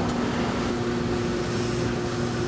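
Steady low hum with a hiss over it from garment steam-pressing equipment: an electric steam generator feeding an industrial steam iron as it presses fabric.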